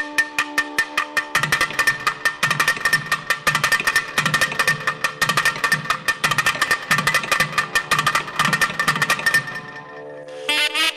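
Thavil drums playing a fast solo passage over a steady drone. Sharp cracking strokes mix with deep thuds from the drums' bass heads. The strokes are sparse at first, turn dense about a second and a half in, and stop just before the end.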